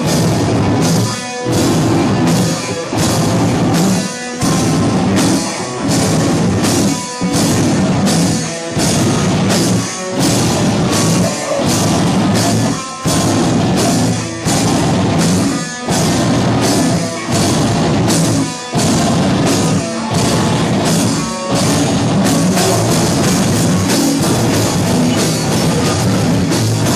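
Live rock band playing loud, with electric guitar and a drum kit, in a stop-start rhythm that drops out briefly about every second and a half.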